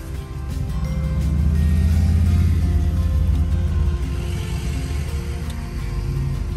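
A motorcycle engine passing close by: a low rumble that swells over the first two seconds and fades away about four seconds in. Background music plays throughout.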